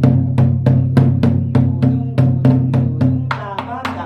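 Large rope-laced barrel drum (a buk-style nanta drum) beaten on its head with two wooden sticks in an even run of strokes, about four a second, its low tone ringing on between hits.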